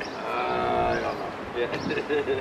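A person's voice holding one long, low, drawn-out vowel for about a second, after which ordinary talk resumes.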